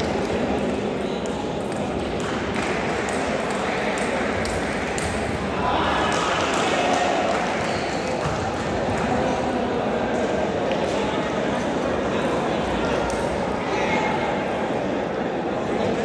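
Table tennis balls clicking against bats and the table during rallies: a string of short, sharp, light taps at irregular intervals, over a steady murmur of many voices in the hall.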